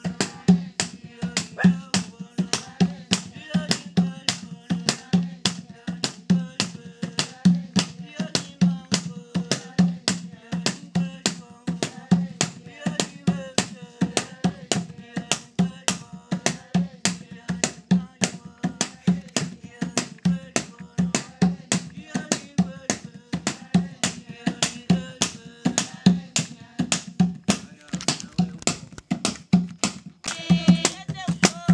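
Traditional hand drum beaten in a steady, fast rhythm of a few strokes a second, each stroke with a deep ringing tone.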